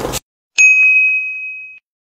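Electronic ding chime of a like/follow/share end-card prompt: a single bright high ring that starts about half a second in and fades out over about a second, with a few light clicks under its start.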